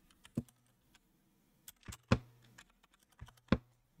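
Typing on a computer keyboard: about ten separate keystroke clicks in an irregular, unhurried rhythm with short pauses between them, two of them sharper near the middle and near the end.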